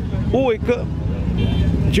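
Steady low rumble of a motor vehicle engine running close by, under a man's brief speech.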